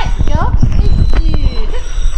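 People's voices, short calls rising in pitch, over a dense clatter of low knocks.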